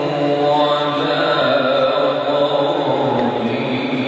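A male Qur'an reciter chanting tilawah in the melodic tajweed style, holding one long drawn-out phrase whose pitch shifts about a second in and falls lower near the end.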